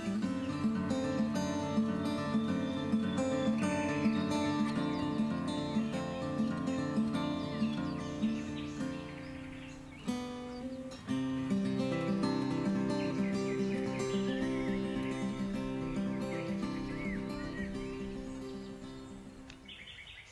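Background music of plucked-string notes in a steady rhythm, breaking off briefly about halfway and fading out near the end. Faint bird chirps come through over it.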